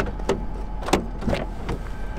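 A car's electric window motor running as the driver's window goes down, over a steady low hum, with several short sharp clicks.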